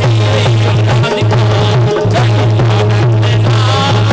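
Bundeli rai folk music, instrumental with no singing: drums over a steady low bass note and a wavering melody line.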